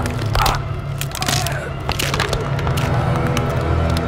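Horror film soundtrack: a steady low drone with sharp cracking and crunching sounds breaking over it several times.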